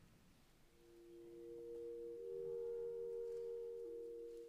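Clarinet playing two soft sustained notes at once, swelling in. The upper note holds steady while the lower one steps up a little about two seconds in and drops back near the end.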